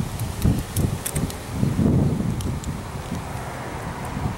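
Wind buffeting the microphone in irregular gusts, with a few faint small clicks in the first half.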